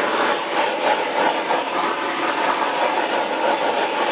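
Handheld propane torch burning with a steady, continuous rushing hiss as its flame is swept over wet acrylic paint to pop trapped air bubbles.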